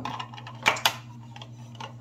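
Hard plastic cups of a three-cup brush washer clicking and knocking as they are handled: two sharp clicks close together about two-thirds of a second in, then a few fainter ticks near the end.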